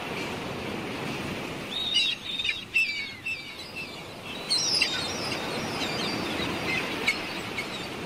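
Birds calling in short chirps and whistles over a steady rushing background noise. The calls start about two seconds in and come in two bursts, the second longer and busier.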